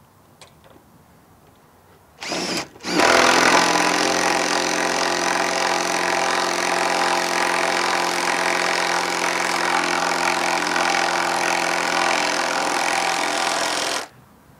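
Power drill with a socket driving a lag screw into wood: a short spin about two seconds in, then the motor runs steadily under load for about eleven seconds and stops suddenly.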